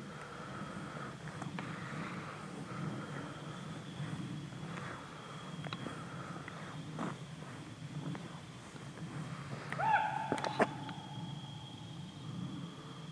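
Footsteps crunching through dry leaf litter under a faint steady high tone. About ten seconds in comes one loud pitched call, bending at its start and lasting about a second, that the walker cannot identify.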